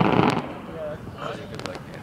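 Fireworks going off low: a burst at the start, then a few sharp crackling pops about one and a half seconds in, over crowd voices.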